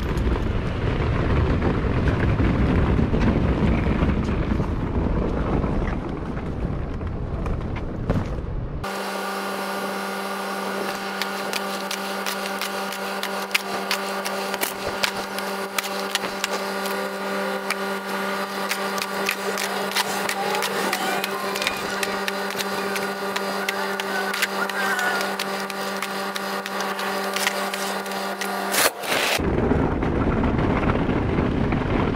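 Low rumbling noise from a laundry-style hamper cart being pushed over rough concrete, with wind on the microphone. About nine seconds in it changes abruptly to a steady pitched mechanical hum from the delivery truck, with scattered clicks and knocks as packages are handled on the cargo floor. The hum cuts off just before the end.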